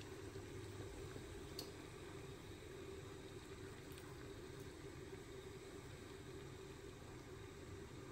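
Faint steady hum and hiss of kitchen background noise, with one faint tick about a second and a half in.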